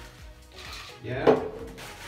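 Berry mix being shaken out of a pouch into a plastic blender cup, a light handling sound, with background music and a short spoken "yeah" about a second in.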